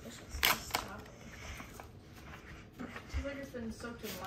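A paper greeting-card envelope being torn open by hand: a couple of quick rips about half a second in, then softer paper rustling. A child's voice is heard briefly near the end.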